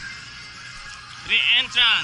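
Music playing steadily in the background, with a voice calling out loudly twice near the end, each call short with a wavering, falling pitch.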